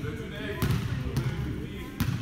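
A volleyball smacks once, about a third of the way in, in a gym hall, over players' voices.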